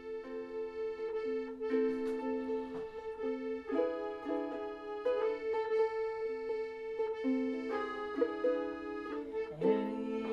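Hohner piano accordion and ukulele playing a tune together. The accordion holds sustained chords that change about every second over a steady held note, while the ukulele is strummed.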